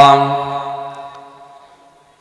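The end of a long held note of a man's melodic Arabic recitation through a public-address system. The note dies away in reverberation over about a second and a half and then fades out.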